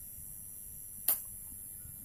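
A pause in speech: faint steady room tone, with one short, sharp click about a second in.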